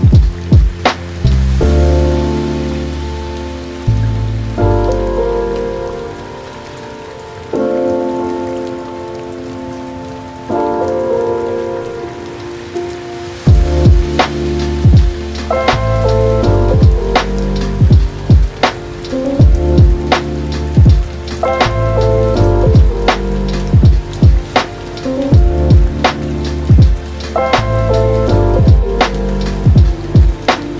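Chill lo-fi beat music over a steady rain-sound bed: sustained keyboard chords and bass, quieter for a stretch, then a regular drum beat comes in about halfway through.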